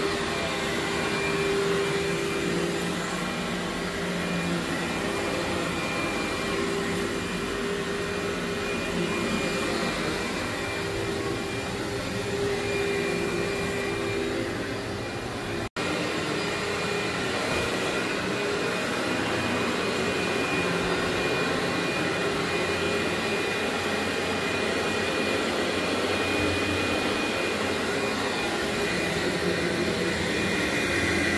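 Upright vacuum cleaner running steadily as it is pushed over carpet: a constant motor hum with a faint high whine. About halfway through, the sound drops out for an instant and comes back with a slightly different motor note.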